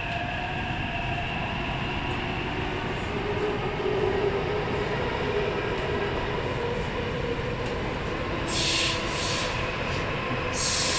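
Interior of a Taipei Metro C371 subway car running through a tunnel: a steady rumble of wheels on track, with a faint high whine fading in the first seconds. Near the end come brief bursts of high hiss.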